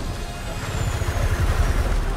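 Film sound effects of a helicopter crash: a deep, heavy rumble with a thin high whine that falls slowly in pitch, over a music score.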